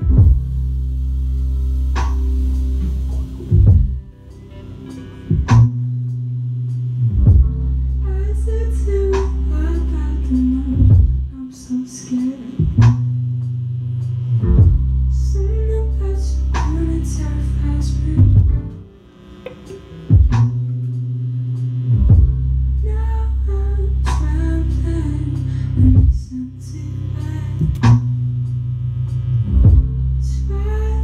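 A live band playing a slow groove: a Telecaster-style electric guitar picking melodic figures over a sustained electric bass line, punctuated by sharp hits. The bass drops out a few times, and the music thins out briefly about two-thirds of the way in.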